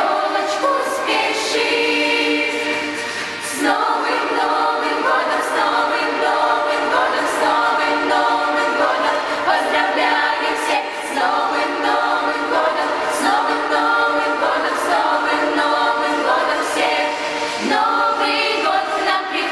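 A girls' choir singing a New Year song in Russian, many young voices together at a steady, full level.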